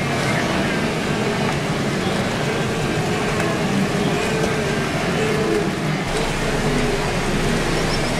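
A large herd of wildebeest calling all at once, many short overlapping calls, over the steady rush and splash of river water churned by the swimming animals.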